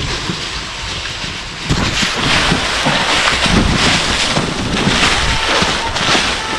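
Scraping and scuffing of a person sliding and stepping down a steep sand-and-clay slope, with rustling and wind buffeting on a body-carried camera's microphone. It is a continuous rough noise that grows louder about two seconds in, with irregular low thumps.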